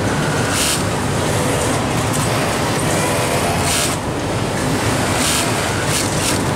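Steady din of a garment factory floor, with many industrial sewing machines running together. Three short bursts of hiss break through it.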